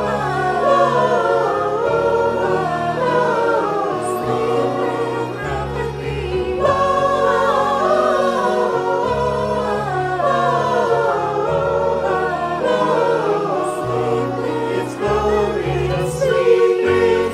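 Mixed choir of men's and women's voices singing in harmony, with piano accompaniment.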